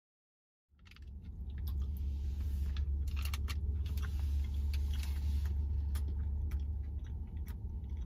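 A person chewing a bite of a soft peanut-butter protein bar with cookie pieces, small irregular wet clicks and crackles of the mouth, over a steady low rumble inside a car's cabin. It opens with a moment of dead silence before the chewing comes in.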